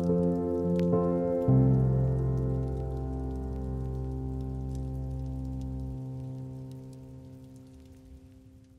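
Ambient background music of sustained, held chords. The chord changes about one and a half seconds in, and then the music fades out steadily toward the end. Faint scattered ticks sit high above it.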